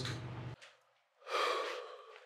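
A person's breathy sigh or heavy exhale, about a second long, starting a little past the middle. Before it, the end of a spoken word and a steady low room hum that cuts off suddenly.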